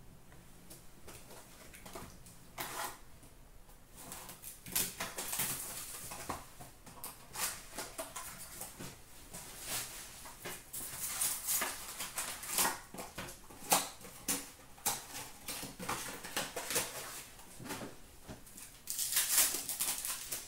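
Hands tearing open and handling trading-card packaging: crinkling plastic wrap and rustling paper and cardboard in irregular bursts, quiet for the first few seconds and busiest near the end.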